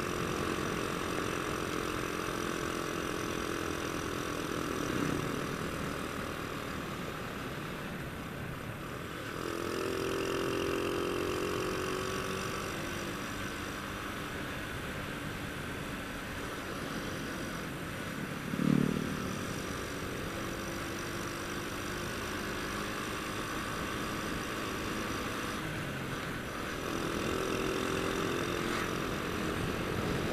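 Honda Astrea Grand's small single-cylinder four-stroke engine running at cruising speed under a steady rush of wind and road noise, its note swelling twice as the throttle opens. A brief thump about two-thirds of the way through is the loudest sound.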